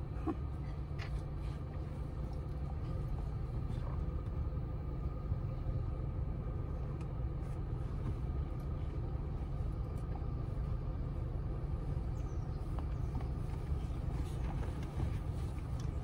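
Steady low rumble of a car running, heard from inside the cabin, with the air conditioning on.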